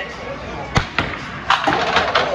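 Mini-bowling ball striking the pins: two sharp knocks a little under a second in, then a further clatter of pins falling near the end.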